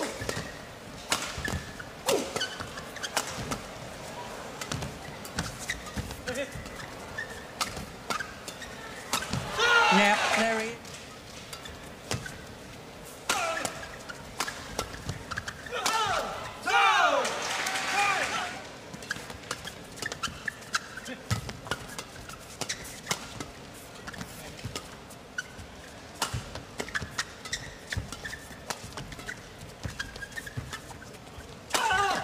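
Badminton play: rackets striking the shuttlecock in repeated sharp clicks, along with footfalls on the court. Loud voices exclaim about a third of the way in and twice more just past the middle.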